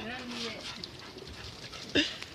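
A brief held vocal call, about half a second long, at the start, then a low steady outdoor background and a single click at the very end.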